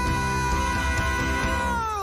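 A male singer holding one long high note over a band with a steady low beat; near the end the note slides down in pitch.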